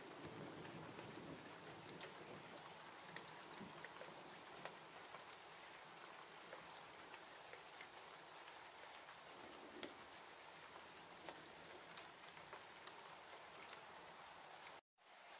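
Faint light rain falling, a steady hiss with scattered single drops ticking sharply close by.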